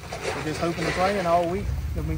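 A man's voice speaking, with a low rumble coming in about a second and a half in.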